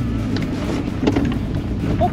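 Old Suzuki Swift's engine running hard as the car launches from a standing start, a strong start.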